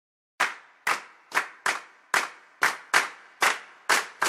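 Rhythmic hand claps, about two a second, in a slightly swung pattern, starting about half a second in.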